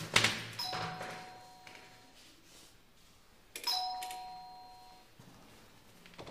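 An apartment door chime rung twice, about three seconds apart, each time a two-note ding-dong (higher note, then lower) that rings on and fades. A short thump comes just before the first chime.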